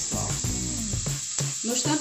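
Steady hiss of chopped onions frying in oil in a pan, with a brief sharp click about one and a half seconds in.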